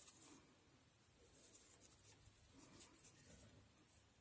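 Near silence with faint, scratchy rustling of yarn drawn over a crochet hook and fingers as chain stitches are worked.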